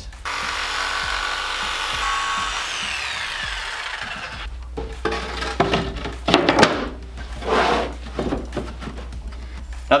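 Jigsaw cutting plywood for about four seconds, its pitch sliding down before it stops. Then scattered wooden knocks and scrapes as the notched plywood shelf is fitted into the 2x4 frame.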